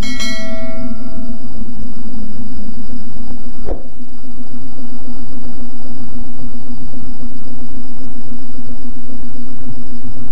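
A single notification-bell chime rings at the start and fades over about a second and a half, over a loud, steady low hum that runs on throughout. A short click comes just under four seconds in.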